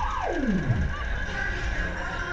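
Huss UFO fairground ride running at speed: a low rumble of wind and ride noise under music. A single tone slides steeply down in pitch during the first second.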